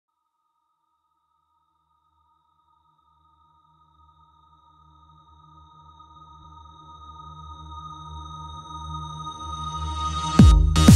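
Electronic music intro: a pair of steady high held tones, joined by a low rumbling drone about four seconds in, swelling steadily louder as the track fades in.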